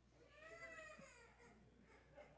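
Faint single high-pitched vocal sound, rising then falling in pitch for about a second, over near silence.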